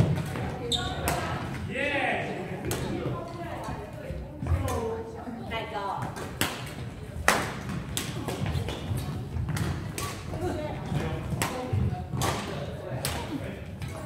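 Badminton rackets striking a shuttlecock in a doubles rally: sharp hits at an irregular pace, the loudest about seven seconds in. Players' voices are mixed in.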